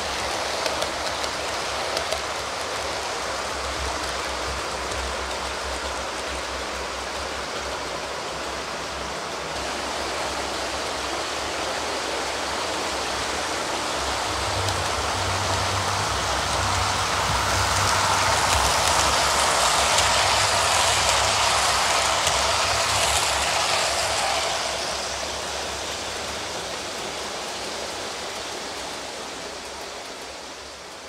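Model train running on the layout's track, here a model Class 52 Western diesel hauling maroon coaches: a steady rumble of wheels on rail. It grows louder as the train comes close, is loudest from about 18 to 24 seconds in, then fades away.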